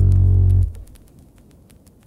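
The final held low bass note of a hip-hop beat, ending abruptly about two-thirds of a second in. Only a faint crackling hiss follows.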